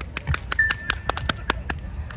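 Scattered hand claps from an audience beginning to applaud as a song ends, irregular and several a second. A brief high steady tone sounds about half a second in.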